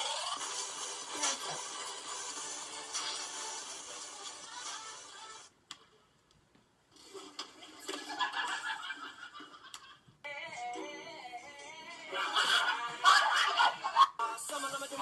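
Music from video clips playing through a computer's speakers. It cuts out for about a second and a half near the middle, then changes twice as new clips begin, and is loudest near the end.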